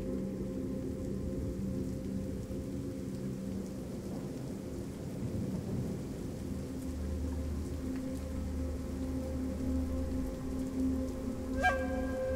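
Rain and rolling thunder over a low, steady musical drone, with the rumble swelling in the second half. Near the end a sharp, bell-like note is struck and keeps ringing.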